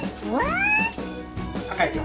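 A comic sound effect: a rising, meow-like swoop in pitch lasting under a second, following straight on from a first one, over background music.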